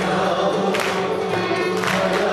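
A male soloist and a mixed choir singing together in Turkish art music style, the voices held in sustained, steady lines.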